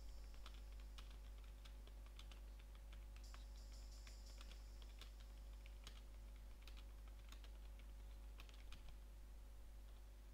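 Typing on a computer keyboard: faint, irregular key clicks over a steady low hum.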